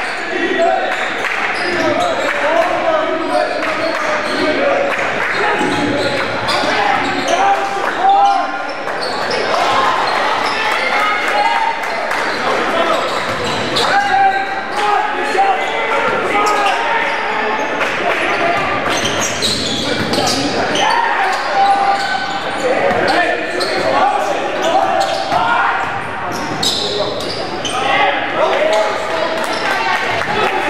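Basketball dribbled on a hardwood gym floor, a run of knocks over continuous voices of players and spectators calling out, echoing in a large gym.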